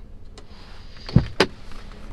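A faint click, then a solid knock and a sharp click about a quarter second apart, from hands handling fittings in a pickup's rear cab.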